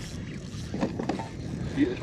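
Steady wind noise on the microphone over open water, with short voice sounds about a second in and near the end.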